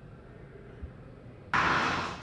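Faint steady background hum, then about one and a half seconds in a sudden loud whoosh transition sound effect that fades away over about half a second.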